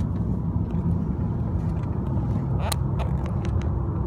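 Car's engine and tyre road noise heard from inside the cabin while driving, a steady low rumble with a few faint clicks.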